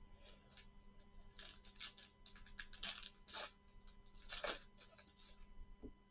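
Trading cards being handled and stacked by gloved hands: a string of short rustling, scraping sounds, the loudest about three and four and a half seconds in.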